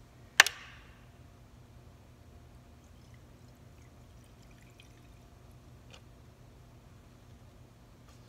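A sharp clack about half a second in, then gasoline poured from a plastic cup into a cylinder head's intake port, faint under a steady low hum. The pour is a valve leak test: fuel that runs out past the valve marks a leaking valve seat.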